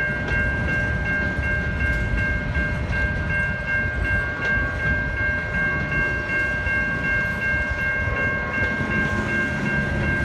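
Freight train of covered hopper cars rolling past, a steady low rumble. Over it rings a steady high-pitched tone of several pitches, and lower tones join in near the end.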